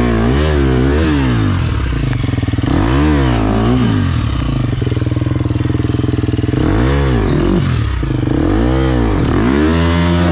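Enduro dirt bike engine revved in short repeated blips, each rise and fall taking about half a second, with a steadier low idle for a couple of seconds in the middle.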